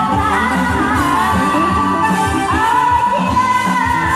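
Live band dance music over a loudspeaker system: a steady beat under a sung melody, with a woman singing into a handheld microphone.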